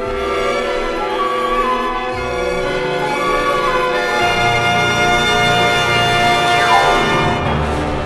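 Concert orchestra playing a lush film-theme arrangement, with strings and brass holding long notes and building in loudness, and a quick falling run near the end.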